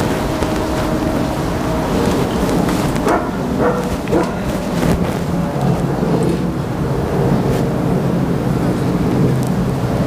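Wind rumbling on the microphone over steady outdoor background noise, with three short sharp sounds about three to four seconds in.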